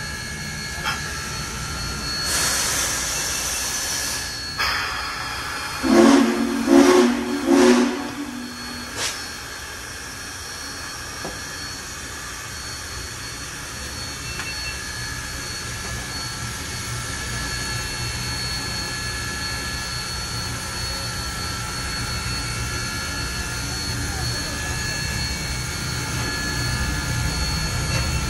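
Hiss of escaping steam on Union Pacific 4014 Big Boy steam locomotive, then three short blasts of its low-pitched steam whistle. A low rumble from the locomotive then slowly grows louder.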